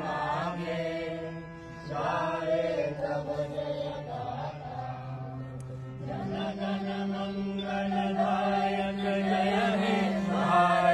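A group of voices singing a slow song together, with long held notes over a steady low drone.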